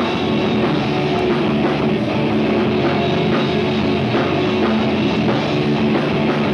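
A punk rock band playing live and loud: distorted electric guitars, bass and a drum kit pounding out a steady, driving beat.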